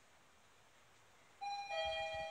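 Mitsubishi ELEMOTION elevator's arrival chime: a two-note descending ding-dong about one and a half seconds in, each note ringing on, marking the car's arrival at a floor.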